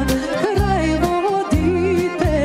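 Background music: a song with a wavering, ornamented melody line over a steady bass beat.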